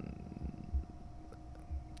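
Low, uneven background rumble with a faint steady hum, and a couple of faint clicks about halfway through.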